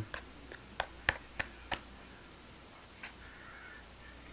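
Fingers tapping on an Orion XTR subwoofer's cone: about five light, sharp clicks within the first two seconds.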